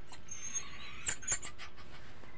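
Chicken and papaya sizzling in a hot aluminium pot while a metal ladle stirs and scrapes against the pot, giving several sharp clinks over a steady sizzle. A few short, high-pitched chirps are heard around the middle.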